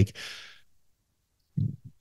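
A man breathes out into the microphone, a short hiss that fades away within half a second. Silence follows, then a brief low voice sound about one and a half seconds in, just before he speaks again.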